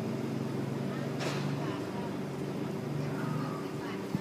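An engine running steadily at idle, a low even hum, with a brief hiss about a second in.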